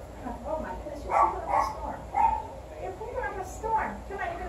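A dog vocalising in several short barks and yelps, spread through the few seconds.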